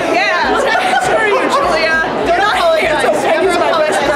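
Several people talking and chattering over one another, excited and animated.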